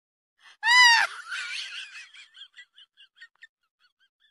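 Cartoonish comedy sound effect: one loud, high, wavering squawk about half a second in, then a run of short chirps, about five a second, fading away.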